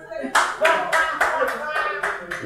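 Hand clapping in a steady rhythm, about three to four claps a second, starting about a third of a second in, with voices underneath.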